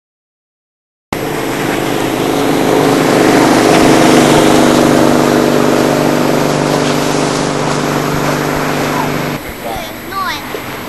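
Hot air balloon's propane burner firing in a loud, steady roar with a low hum. It starts suddenly after about a second of silence and stops abruptly near the end.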